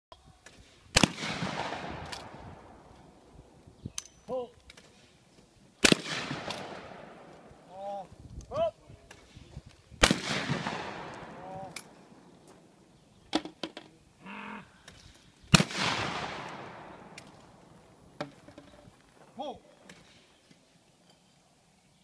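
Four 12-gauge-style trap shotgun shots, about four to five seconds apart, each followed by a long echo rolling back off the surrounding woods.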